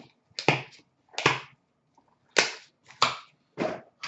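Trading cards and a metal card tin handled on a glass counter: about five separate sharp clacks and taps, spaced irregularly over four seconds.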